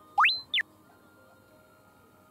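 A comic whistle sound effect: a single pure tone slides quickly up in pitch, holds briefly and slides back down, all within about half a second near the start. Faint background music plays under it.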